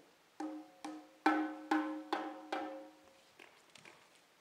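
Six evenly spaced strikes on a pitched percussion instrument, a little over two a second, each note ringing briefly and fading; the third strike is the loudest.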